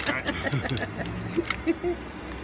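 Cooked lobster shell being pulled and cracked apart by hand, with a few sharp cracks and snaps, the loudest near the end. A voice and a short laugh come at the start.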